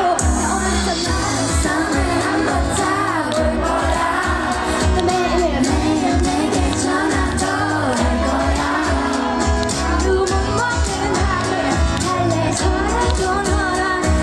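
Live pop song: a woman singing into a handheld microphone over amplified pop accompaniment with a steady drum beat, heard through the stage speakers.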